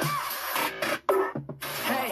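K-pop dance track playing, an electronic beat under group vocals, with a short cut-out about a second in.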